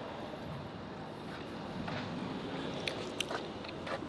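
A car engine idling with a steady low hum, with a few faint clicks about three seconds in.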